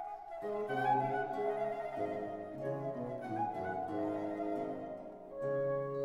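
Instrumental passage of a Baroque cantata aria, played by a period ensemble: a flute carries the melody over a moving bass line. A new phrase begins with a held low note near the end.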